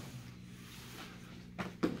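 Steady low hum of room tone, then a couple of short knocks near the end as the wrestlers' bodies and shoes shift on the mat during a breakdown.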